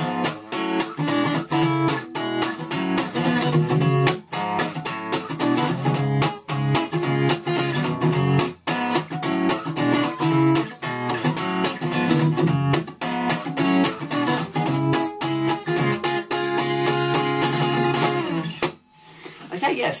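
Steel-string acoustic guitar, unamplified, strummed in chords; the playing stops near the end.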